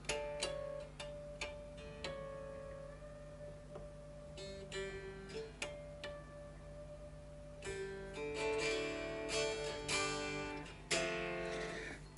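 Fender Duo-Sonic short-scale electric guitar being played as a test of a freshly lowered action. Single picked notes are left to ring at first, then from about halfway through come quicker runs of notes and chords.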